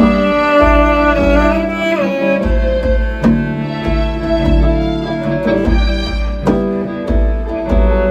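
Live band jamming: held melody notes over a low, pulsing bass line, with drum and cymbal hits keeping time.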